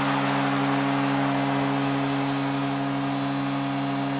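Arena goal horn sounding one long, steady chord over a roaring crowd, signalling a home-team goal.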